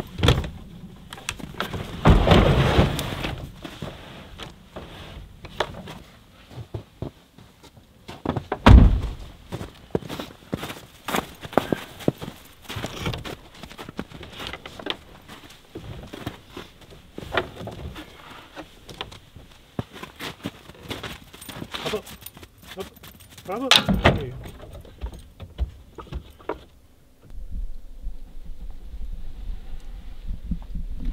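Knocks, thuds and rattles of gear being handled in the back of a pickup truck and of the wooden hatch on a camper extension being opened, with the loudest thud about nine seconds in.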